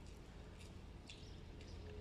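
Quiet outdoor background: a faint steady low hum, with a few faint high-pitched sounds about half a second and a second in.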